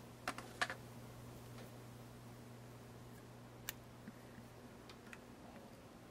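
Small handling clicks and taps from fly-tying tools and materials at the vise: two sharp clicks in the first second, one more near the middle, then a few faint ticks, over a low steady hum.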